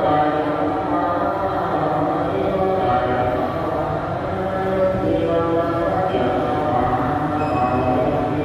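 Buddhist worshippers and monks chanting a sutra together, a steady recitation of many voices without pause.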